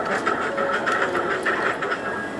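Motorised gantry drawing machine (pen plotter) moving its pen carriage while drawing a portrait: a steady mechanical whir with rapid, irregular clicks that stops at the end.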